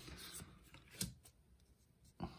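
Faint handling of a stack of Pokémon trading cards as one card is slid off the front of the stack, with a single soft click about a second in.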